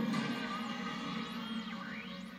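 1958 München-Motorola S-951 tube radio playing music from a medium-wave station as it is tuned, with high whistles sliding up and down over the music.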